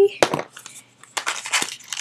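Packaging being handled and opened by hand: several short crinkling, crackling bursts with a brief pause between them.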